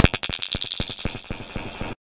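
Electronic background music ending in a rapid train of short clicks that fades away and cuts off just before the end.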